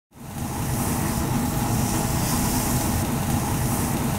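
Burger patties sizzling steadily on a flat-top griddle, a continuous bright hiss over a low mechanical hum, fading in from silence at the very start.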